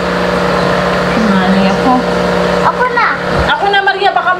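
A small motor running with a steady hum and a constant low tone. Voices are heard over it in the second half.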